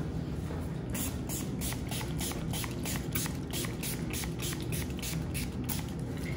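Spray bottle of rubbing alcohol pumped in a rapid run of short spritzes, several a second, starting about a second in and stopping shortly before the end.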